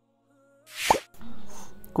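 Slideshow transition sound effect: a short whoosh ending in a quick plop that drops sharply in pitch, about a second in, followed by a softer steady sound.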